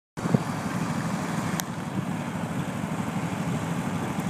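Bennche 700 Big Horn utility vehicle's liquid-cooled EFI engine idling steadily, with a single light click about a second and a half in.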